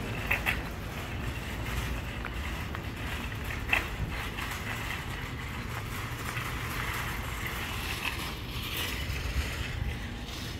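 Metal shopping cart rolling across asphalt: a steady rumble and rattle from its wheels and wire basket, with a few sharper clacks.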